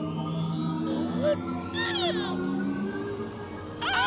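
Cartoon underscore music with sustained low notes, overlaid with twinkling magic-sparkle sound effects and brief high squealing animal calls from the glowing cartoon monkey. A cartoon voice comes in just before the end.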